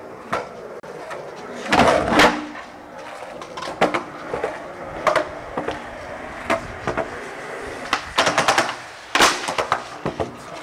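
Skateboard wheels rolling on a hard, smooth surface, broken by repeated clacks and slaps of the board's tail and deck hitting the ground during tricks. The loudest clatter comes about two seconds in and again in a quick run between eight and nine and a half seconds.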